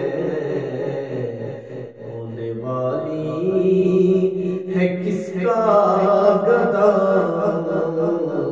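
A man singing a hamd, a devotional poem in praise of God, solo in long drawn-out melodic phrases. He pauses briefly about two seconds in, and a new, higher phrase begins about five and a half seconds in.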